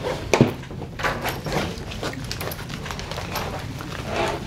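Rummaging through bags: rustling fabric and small items clicking and knocking together as things are handled and pulled out, with one sharper knock about half a second in.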